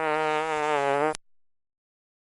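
A drawn-out fart sound at a steady low pitch, lasting about a second and a half and stopping a little past halfway.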